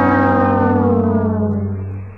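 Comic sad-trombone sound effect: the long last note is held and slides slowly down in pitch, fading out near the end.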